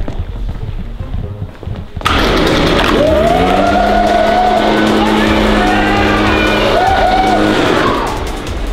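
Gas-powered backpack leaf blower kicking in about two seconds in and running hard, a loud steady rush of air with an engine note that climbs and then holds, under background music.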